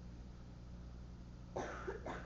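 A person coughing, two short coughs in quick succession near the end, over a steady low room hum.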